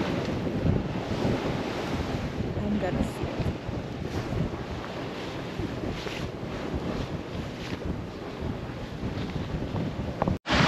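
Wind buffeting the microphone on the deck of a sailing yacht under way, over the steady rush of sea water along the hull, rising and falling in gusts.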